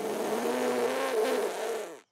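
A cartoon character blowing hard into a bubble wand: one long, breathy blow with a wavering buzz in it, lasting about two seconds and stopping suddenly. It is a failed attempt: the wand does not make a bubble.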